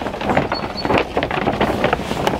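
Black plastic sheeting crinkling and rustling as it is pushed aside, a dense run of crackles.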